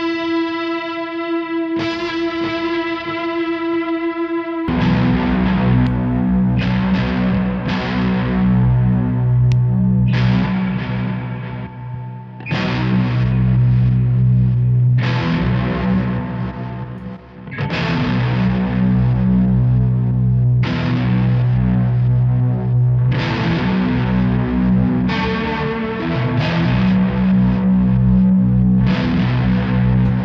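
Electric guitar played through fuzz and effects pedals: a single held note rings for the first few seconds, then loud distorted chords are strummed over and over, with two brief drops in the playing near the middle.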